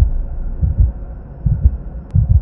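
Deep bass pulses from a logo intro's sound design, a few each second, with little above the low end.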